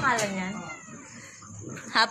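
A cat meowing once near the start, a single drawn-out call that falls in pitch.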